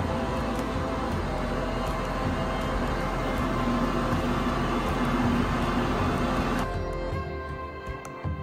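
Push-button wall-mounted electric hand dryer blowing with a steady rush, under background music; the rush cuts off about seven seconds in.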